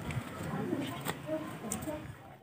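Faint bird calls, a few short pitched notes, over low background voices.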